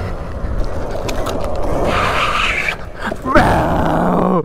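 Wind buffeting the camera microphone and tyre noise on concrete from an upgraded Kayo EA110 electric quad ridden in a wheelie. There is a steady low rumble throughout, a brighter stretch in the middle, and a short rising sound near the end.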